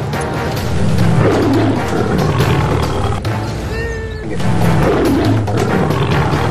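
Recorded tiger roars, two of them, about a second in and again about five seconds in, over dramatic background music.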